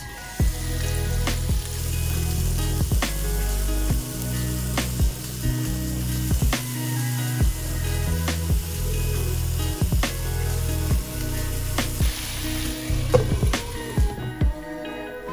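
Minced-meat and grated-potato patties sizzling as they fry in oil in a pan, under background music with a steady beat.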